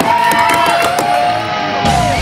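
Rock theme music opening a news segment: electric guitar notes ring and hold, and a heavier bass and drum sound comes in near the end.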